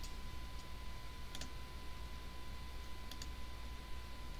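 A few faint computer mouse clicks, some in quick pairs, over a steady low electrical hum and a thin steady tone.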